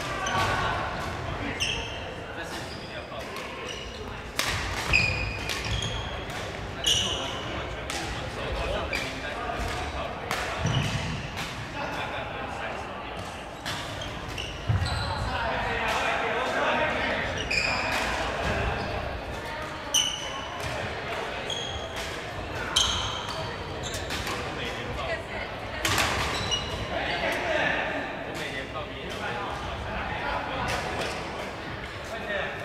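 Badminton play on a wooden hall floor: irregular sharp racket hits on the shuttlecock and short high squeaks of court shoes on the floor, with voices in the background.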